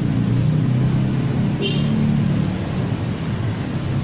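Road traffic beside the stall: a steady low rumble of passing vehicle engines and tyres. A brief high-pitched tone cuts through about one and a half seconds in.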